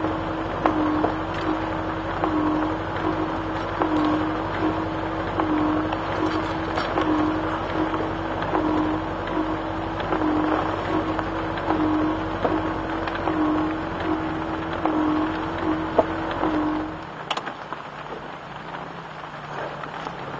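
Triumph Roadster's four-cylinder engine running at low speed, with a regular pulsing whine about one and a half times a second; about 17 seconds in the engine is switched off and stops suddenly, leaving rain falling on the car.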